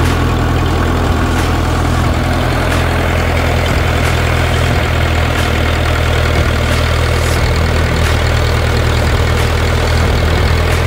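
A 1960 International B275 tractor's four-cylinder diesel engine running steadily at low speed, heard close up from the driver's seat beside the exhaust stack.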